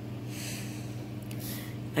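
A person breathing or sniffing through the nose twice, the first breath about a second long and the second shorter near the end, over a steady low hum.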